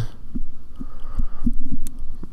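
Soft, uneven low thumps, about six in two seconds, with a faint hum.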